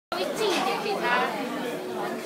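Indistinct chatter of several people talking at once in a busy, echoing room.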